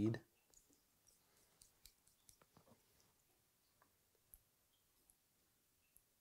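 Faint, scattered small clicks and ticks of thread and tool being worked at a fly-tying vise during a whip finish, with one sharper click a little past four seconds.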